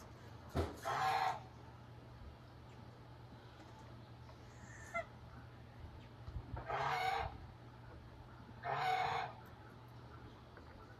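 Chickens calling: three short calls, one about a second in, then two more near the end, a couple of seconds apart.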